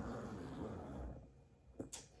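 Faint handling noise in the first second, then quieter, with a single short click near the end.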